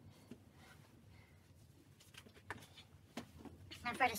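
Quiet room with a few soft knocks and rustles of clothing and shoes being handled, then a voice starts right at the end.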